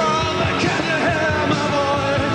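Post-punk rock band playing live: a male lead vocal sung over bass, guitars and drums.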